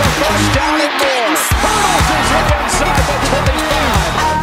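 Electronic dance music with a steady beat and short swooping synth sounds repeating several times a second.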